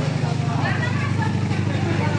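Steady low mechanical rumble of a vortex tunnel's rotating drum, with people's voices faintly over it.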